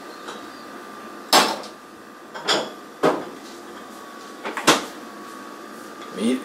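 A refrigerator door being opened and shut and a glass jar being taken out: a handful of sharp knocks and bumps, the loudest about a second in.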